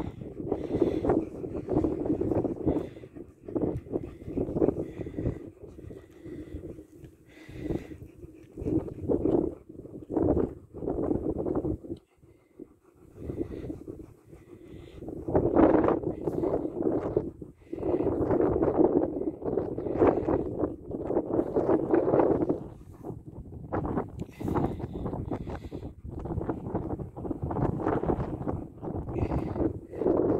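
German Shepherd dogs breathing, panting and nuzzling right at a phone's microphone, with fur brushing it and wind buffeting it in irregular bursts.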